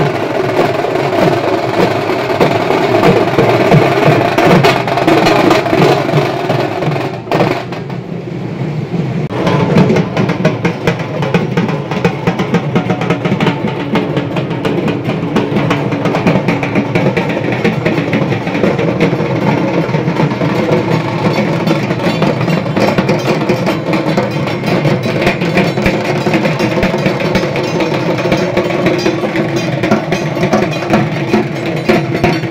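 Several dhak drums beaten with thin sticks at once, a fast, dense rolling rhythm of strokes that carries on throughout. It drops back briefly about seven seconds in, then resumes.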